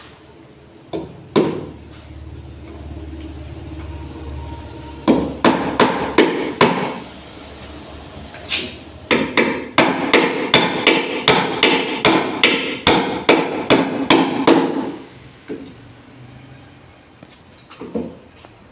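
Hammer driving nails into wooden formwork boards. A few separate blows come first, then a quick group, then a fast steady run of about three strikes a second lasting several seconds.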